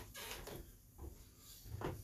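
Faint knocks and handling sounds of a person moving about a small room, with one knock at the start and another near the end.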